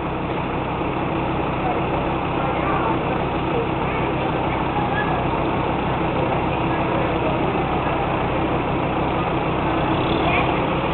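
Pickup truck engine idling steadily, with people's voices in the background.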